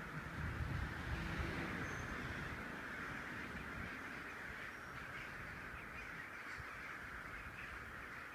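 A huge flock of crows calling all at once, a steady din of overlapping caws. A low rumble sits under it for the first couple of seconds.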